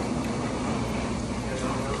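Restaurant dining-room noise: faint voices from around the room over a steady low hum.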